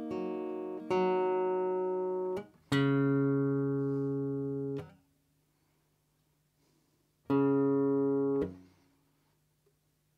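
Steel-string acoustic guitar being tuned: single strings plucked one at a time, each ringing for a second or two and then damped, three plucks with a quiet gap in the middle while a peg is turned. It is being retuned after being knocked out of tune by falling off its stand.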